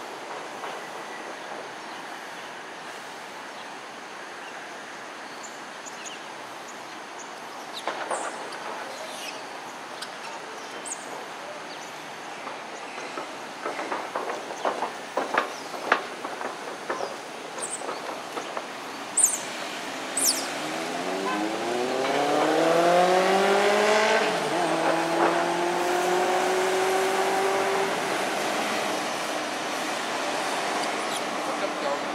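Steady rushing background, then in the last third a motor vehicle's engine speeding up: its pitch rises, steps once, and then holds level for a few seconds.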